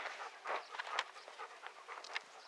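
A dog panting close by: quick, breathy pants, about three to four a second.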